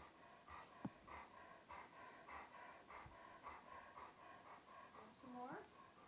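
A large dog panting softly, about three breaths a second. Near the end there is a brief vocal sound that slides up and back down in pitch.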